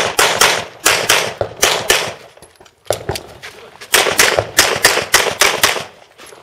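Rapid pistol shots fired in quick pairs and strings at targets. There is a short break about two seconds in, then the fast shooting resumes and runs on until near the end.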